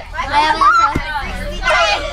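Young girls' voices, unclear talk or vocal sounds, over the steady low rumble of a moving bus.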